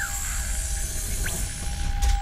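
Eerie sound-design soundtrack under an animated opening credit card: a steady high hiss over a low rumble and a held tone, with a falling whistle-like glide at the start and a short rising one past the middle.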